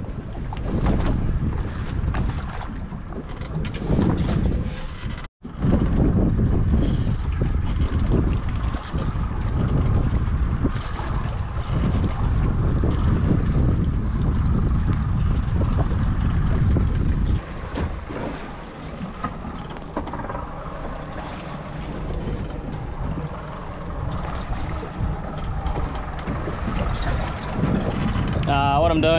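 Wind buffeting the microphone on an open boat at sea, a heavy rumble that eases about two-thirds of the way through, with a brief dropout to silence about five seconds in.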